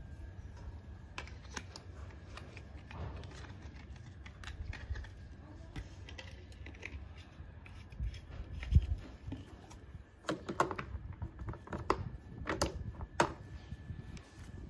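Scattered light clicks and knocks of things being handled, with one louder thump about nine seconds in and quick clusters of clicks near the end.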